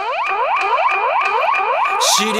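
Electronic hip hop intro: a synthesizer effect sweeping in pitch over and over, about five sweeps a second, over a steady high tone.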